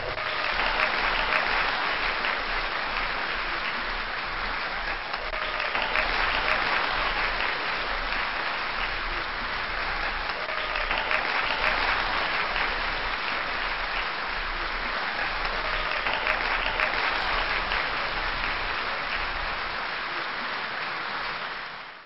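Crowd applause, a steady wash of many hands clapping that keeps up throughout and dies away at the very end.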